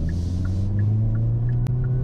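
Hyundai Kona N's 2.0-litre turbocharged four-cylinder engine heard from inside the cabin, its low note rising slowly as the car accelerates, over road noise. A single sharp click comes about three-quarters of the way through.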